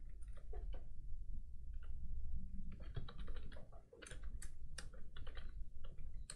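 Computer keyboard typing: irregular clusters of keystrokes, coming faster and denser in the second half.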